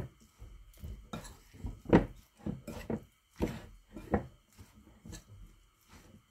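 A spoon scraping and knocking against a glass bowl as it stirs a thick, moist ground-meat mixture, in irregular strokes about once or twice a second.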